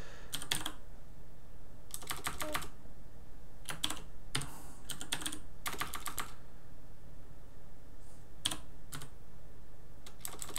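Typing on a computer keyboard: short runs of quick keystrokes with pauses between them, over a faint steady low hum.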